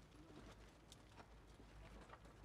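Near silence, with faint, irregular clicks and taps scattered through it.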